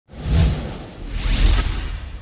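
Whoosh sound effects of a news channel's logo intro: two rushing swells about a second apart, with deep bass under them.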